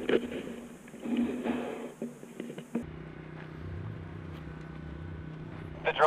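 Irregular knocking and rustling picked up by the rocket's onboard camera in flight, cutting off abruptly about three seconds in. A steady low hum follows, and a voice starts near the end.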